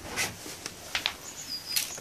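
A few light clicks and rustles of handling as the camera is moved, with faint, brief high bird chirps in the background.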